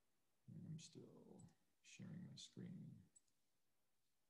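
A man muttering a few quiet words in two short stretches, with a couple of faint clicks of a computer mouse.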